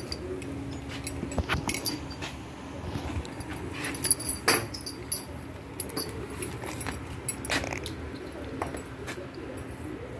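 Tack being handled while a horse is saddled: the leather straps and metal fittings of a western saddle give scattered short clicks, knocks and rustles.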